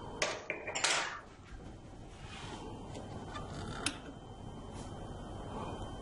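A few short plastic clicks and scrapes in the first second from hands working a Darwin-mini robot and its power switch, then a steady faint hiss with one more sharp click near four seconds. No servo sound follows: with only one battery connected there is not enough power for the robot to move.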